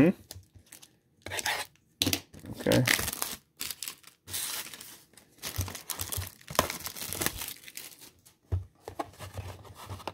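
Clear plastic wrap being torn and crinkled off a cardboard trading-card mini box, in short irregular bursts with quiet gaps between them.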